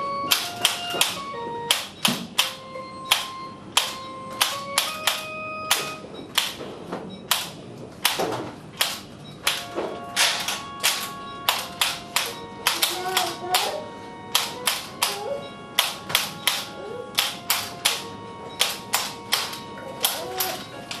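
Homemade abacus instrument strung like a gut-string guitar, played as music. Its beads are clacked in a rhythm of sharp clicks, a few per second, along with plucked string notes.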